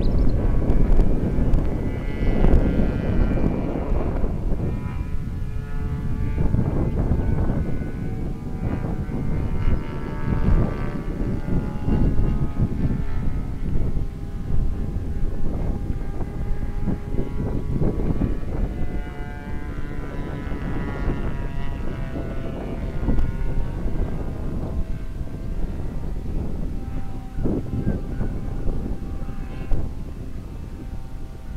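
Engine and propeller of a large radio-controlled scale de Havilland Beaver model in flight, heard from the ground, its pitch shifting up and down as it flies its circuit. Wind rumbles on the microphone underneath.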